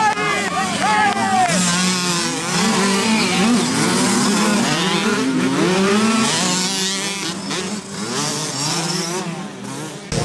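Several 65cc two-stroke minicross bikes, KTM SX 65s among them, racing past, their engines revving up and down as the riders work the throttle and shift, fading somewhat toward the end.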